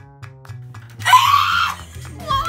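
Background music with soft plucked notes and a steady bass. About halfway through, a person lets out a loud, high-pitched scream lasting under a second.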